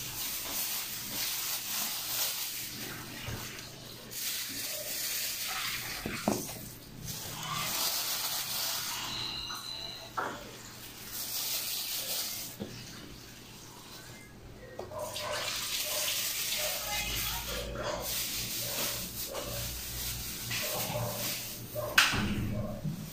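Water running from a kitchen tap into the sink, on and off, with a plastic bag rustling close by.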